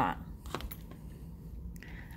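A few light clicks and taps from hands handling things on a work table, about half a second in and again near the end, over a faint low hum.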